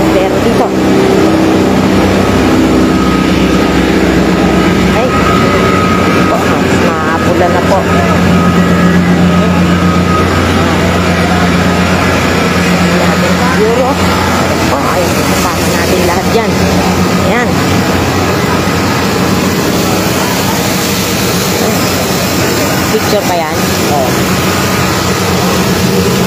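A fire truck's engine running steadily and loudly, with a constant low drone, while people's voices come through now and then.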